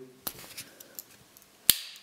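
The cap lifter of a Victorinox Huntsman Swiss Army knife being pried out: a few faint metal scrapes and ticks, then one sharp click near the end as it snaps open into place.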